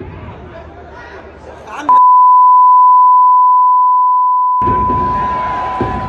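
Football crowd chanting and shouting, cut off about two seconds in by a loud, steady, high beep that blanks out everything else for nearly three seconds: an edited-in censor bleep over the fans' chant. The crowd comes back under the beep, which fades slowly.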